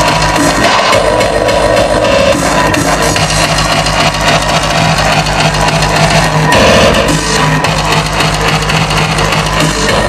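Hardcore electronic dance music played very loud over a club sound system, with a fast, evenly repeating heavy kick drum under dense synth sounds, briefly swelling louder about two-thirds of the way in.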